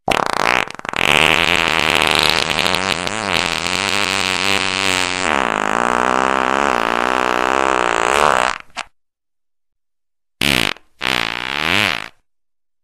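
Fart sounds: one long fart lasting about eight and a half seconds with its pitch wobbling up and down, then after about a second of silence two short farts near the end.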